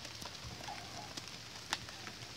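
Faint steady hiss with scattered light ticks, typical of light rain dripping onto a wet wooden deck. One sharper click comes near the end.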